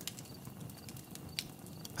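Faint outdoor night ambience: a low, even hiss with small soft ticks and one sharper click a little under a second and a half in.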